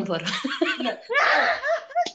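A woman laughing in quick repeated pulses, growing louder about a second in, mixed with bits of speech.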